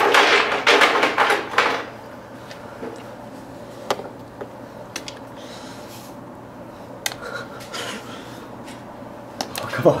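A person laughing for about two seconds, then quiet room tone with a few small clicks, and a short laugh again near the end.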